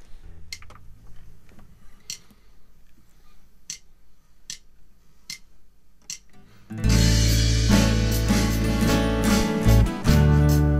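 Sharp ticks spaced at a steady beat, roughly one every 0.8 s, counting in a song. About seven seconds in, a loud multitracked band arrangement starts: strummed acoustic guitar over drums and a heavy low end.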